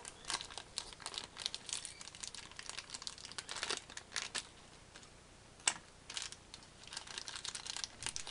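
Thin clear plastic bag crinkling and crackling in irregular bursts as a hand opens it and takes out a small clear plastic miniature base and its parts. A single sharp click sounds a little past halfway.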